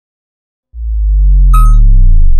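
A loud, deep synthesized bass tone that starts suddenly about three quarters of a second in and then slides down in pitch, with a brief high ding about a second and a half in.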